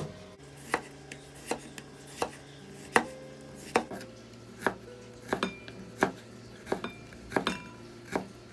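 A knife slicing a cucumber on a wooden cutting board, the blade knocking on the board at a steady pace of about one stroke every three-quarters of a second, a few strokes doubled.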